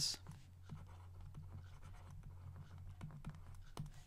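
Faint scratching and light tapping of a stylus writing by hand on a tablet surface, a run of small strokes and clicks, over a low steady electrical hum.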